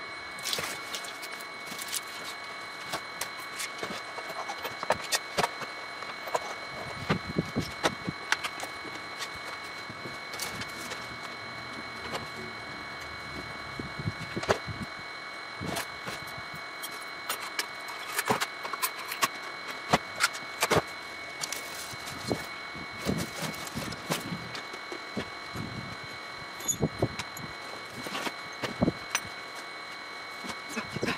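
Scattered clicks, clinks and knocks of hand tools and small parts being handled and put away into drawers and shelves, over a steady faint high whine.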